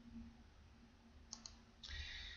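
Near silence, with two quick faint clicks about one and a half seconds in from computer controls: keyboard keys or a mouse button.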